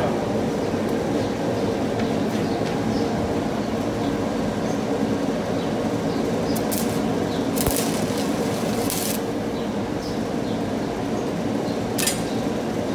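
Steady hum of workshop machinery, with a few brief hissing bursts about two-thirds of the way through.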